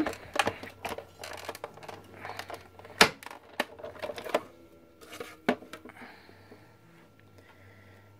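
Sizzix Big Kick manual die-cutting machine being hand-cranked to run the platform and embossing folder through its rollers: a quick run of mechanical clicks and knocks with one louder knock, then a few scattered clicks as the plates are taken out.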